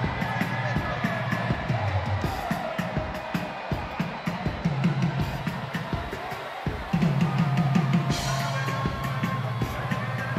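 Live drum kit solo: fast, dense strokes on kick drum, toms and snare. The playing breaks off briefly a little before seven seconds in, then comes back in with a bright cymbal-like splash.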